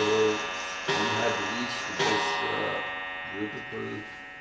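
A bell struck about once a second, three strokes, each ringing on and slowly dying away. The last stroke rings down about three seconds in.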